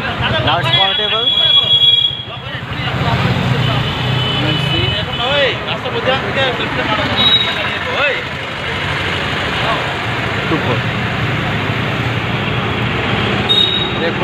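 Porsche Boxster's power-operated soft top folding open, a steady mechanical hum, with a high beep about a second in, a short one midway, and another just before the roof finishes.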